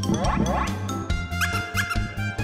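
Bouncy children's background music with a steady beat, overlaid with short squeaky rising pitch glides that come in pairs.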